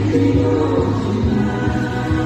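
Male singer singing a Korean trot song live into a handheld microphone, holding sung notes over backing music with a steady bass.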